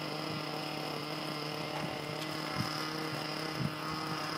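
A steady hum with a faint high whine throughout, and two faint brief sounds about two and a half and three and a half seconds in.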